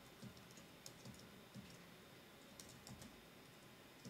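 Faint typing on a computer keyboard: soft, irregular keystrokes.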